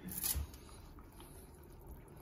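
Faint room tone: a brief soft rustle and knock just after the start, then a low steady hiss.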